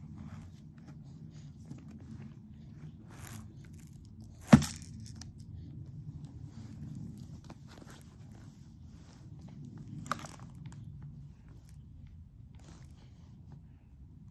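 Low rustling and handling noise of a baby crawling over blankets and toys, with one sharp, loud knock about four and a half seconds in and a smaller click about ten seconds in.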